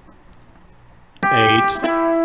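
Clean Telecaster-style electric guitar: quiet for about a second, then a picked note, then a second, lower note near the end that rings on. These are notes from a country chicken-pickin' lick in A.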